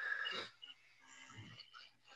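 A person's short intake of breath, heard in the first half-second, before speaking again.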